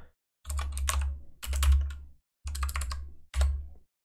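Typing on a computer keyboard: four short runs of keystrokes with a dull thud under each, separated by silent pauses.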